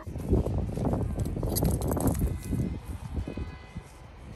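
Wind buffeting the phone's microphone outdoors, an irregular low rumble, with footsteps on dry grass.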